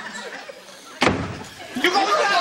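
A single sharp slam about a second in that dies away over about half a second, with faint voices around it.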